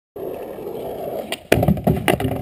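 Skateboard wheels rolling on asphalt. About a second and a half in, the board hits a brick curb with a loud clack and scrapes along its edge.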